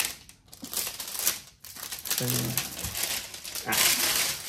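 Clear plastic shrink-wrap crinkling and rustling in irregular bursts as it is handled and pulled away from a cardboard box set.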